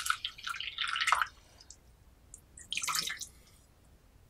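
Water splashing and dripping over a Yixing clay teapot onto its metal tray, in a spell of about a second at the start and a shorter one about three seconds in.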